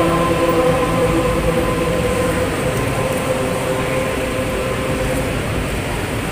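Youth choir holding a soft, sustained chord, steady and slowly easing down in loudness, over a haze of hall noise.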